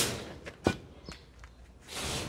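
A single sharp knock about two-thirds of a second in, followed by a much fainter tick, over a quiet background.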